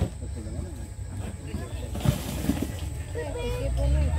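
Men's voices talking at the sideline, getting louder near the end, over a steady low rumble, with a brief hiss about two seconds in.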